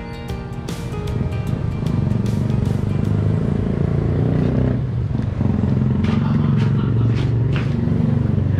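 Guitar background music fading out over the first second, giving way to a motorcycle engine running steadily, a low pulsing rumble that grows louder and then holds.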